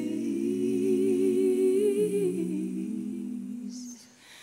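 Several voices singing a cappella in close bluegrass-gospel harmony, holding long chords with vibrato. The chord shifts about two seconds in, and the sound fades away near the end.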